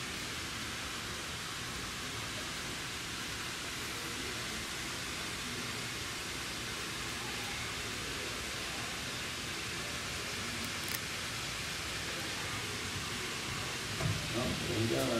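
A steady, even hiss with no distinct sound in it, and a faint click about eleven seconds in.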